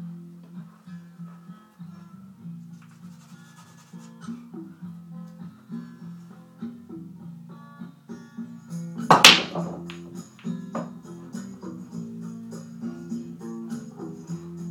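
Acoustic guitar music plays throughout. About nine seconds in comes a single loud crack as the cue ball breaks a rack of 1 7/8-inch pool balls, followed by a few lighter clicks of balls striking each other.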